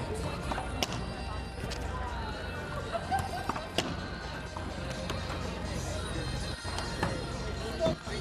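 Background chatter and music, broken by a few sharp smacks of a ball striking a hand, racquet, wall or court floor, the loudest near the end.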